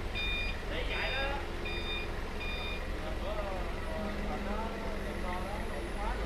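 TCM forklift's reversing alarm beeping repeatedly, about one beep every 0.7 s, over the forklift's engine running; the beeps stop a little under three seconds in.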